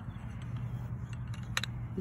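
A steady low hum with a couple of light clicks about one and a half seconds in, made by the metal hay-probe tube and plunger knocking against the rim of a plastic graduated cylinder as it is set in place.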